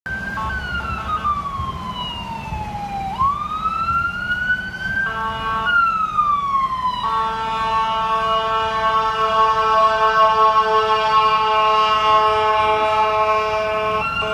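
Ambulance siren wailing in slow falling and rising sweeps, broken by two short horn blasts, then a long steady horn from about halfway through, growing louder as the ambulance approaches and clears the intersection on an emergency response.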